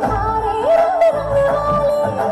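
A song with a sung melody over a beat: the voice holds one long, wavering note about halfway through, then steps down.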